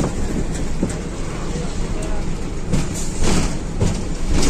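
Steady rumbling vehicle noise, as heard from inside a bus, with a few rattling knocks about a second in and near the end.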